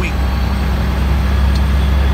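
Semi-truck's diesel engine running, a steady low drone heard from inside the cab.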